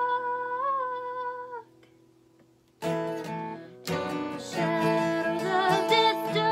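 A woman singing to her own acoustic guitar. A held sung note ends about a second and a half in, followed by a brief near-silent pause. Guitar strumming then starts again, and the singing resumes near the end.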